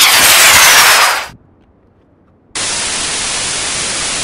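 Sound effects of an animated end-card transition. First a loud whoosh of noise with a faint falling whistle in it fades out after just over a second. After about a second of near silence, a steady, even hiss like white noise cuts in.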